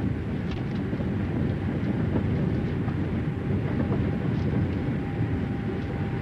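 Steady running rumble of a moving passenger train, heard from inside the carriage.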